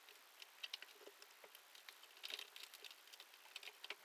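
Faint, irregular light clicks and taps of wires and small piezo tweeters being handled against a plastic ammo can as the speaker leads are fed through the holes.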